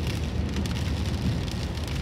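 Rain falling on a car's windscreen and roof, heard inside the moving car, over a steady low rumble of the car and its tyres on the wet road.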